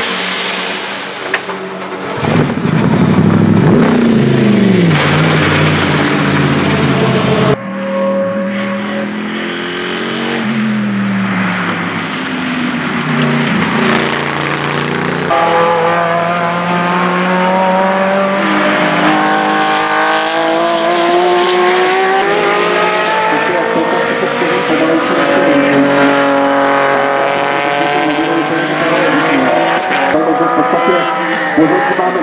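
GT race car engines at full throttle, in a series of short shots: engine notes that rise and fall, then, in the second half, a Porsche 911 GT3 accelerating along the track, its pitch climbing and dropping back at each upshift.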